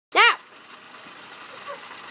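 A brief, loud, high-pitched voice call just after the start, rising then falling in pitch, followed by a steady faint hiss.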